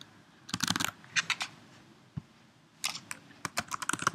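Computer keyboard keys being pressed: a few short groups of clicks with pauses between them, then a quicker run of keystrokes near the end as a short terminal command is typed.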